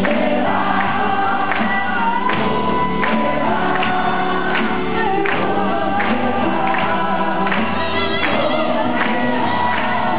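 Live folk-rock band performing a song: several voices singing together over strummed acoustic guitars, with drums keeping a steady beat.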